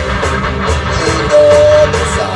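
Live band playing electric guitars and drums, with cymbal hits in a steady beat. A single note is held above the mix for about half a second a little past the middle, the loudest moment.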